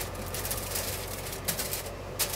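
A sheet of paper rustling as it is smoothed flat over scones on a freezer tray, with a few short clicks, the clearest about a second and a half in, over a steady low hum.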